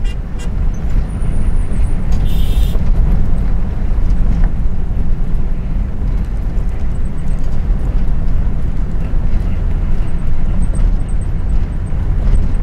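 Steady, heavy low rumble of a vehicle driving fast over a desert road, with wind noise on the microphone. A short high-pitched beep sounds about two seconds in.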